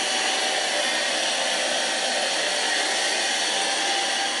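Cordless stick vacuum running steadily with a crevice nozzle, sucking up dust and debris from a gap in the floor: an even hiss with a faint steady whine.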